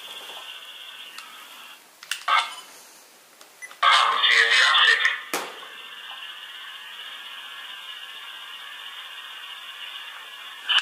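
Recording played back through a handheld digital voice recorder's small speaker: a steady hiss, a short sound about two seconds in and a louder stretch about four seconds in, then a sharp click. It is the recording being checked for EVPs.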